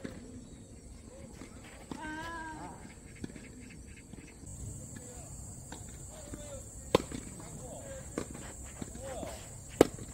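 Tennis ball struck by racket strings, two sharp hits, about seven seconds in and near the end, with a few fainter ball impacts between.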